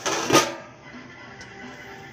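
Stainless steel pot lid put onto a cooking pot, with a single clank about a third of a second in. Soft background music follows.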